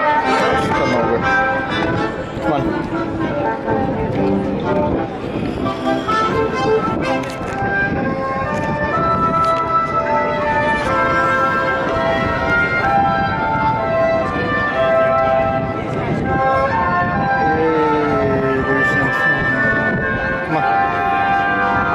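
Brass band music with long held notes, over the steady chatter of a crowd.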